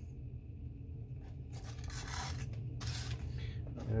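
Hand-handling noises at a workbench: short rustles and scrapes from string being tightened and a foil pouch being handled, about a second and a half in and again briefly near three seconds. A steady low hum runs under it.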